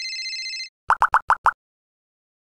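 Electronic logo sound effect: a steady high electronic tone that cuts off under a second in, followed by five quick plopping blips in about half a second.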